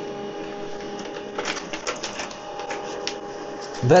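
HP LaserJet M140w laser printer printing a page: a steady motor run with several held tones, broken by a few short clicks of the paper feed about a second and a half in and again near three seconds.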